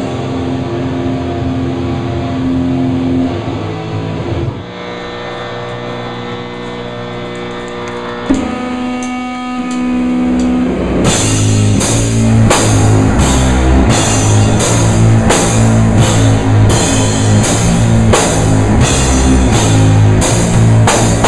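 Live heavy metal band: electric guitar and bass hold long ringing chords for about ten seconds, then the drum kit comes in with slow, regular cymbal and drum hits, about one and a half to two a second, under the guitars.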